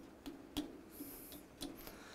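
A few faint, scattered clicks and light knocks from hands working at a lathe chuck and the stainless steel tube clamped in it, with a brief soft hiss about a second in, as the tube's runout is being corrected.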